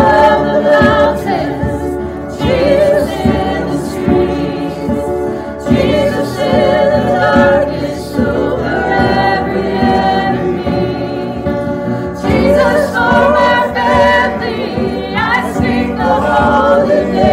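Several women singing a worship song together, with a guitar playing along underneath; the sung phrases break off and start again every few seconds.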